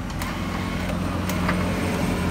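Steady low hum of a motor vehicle engine running nearby, with a few faint light clicks.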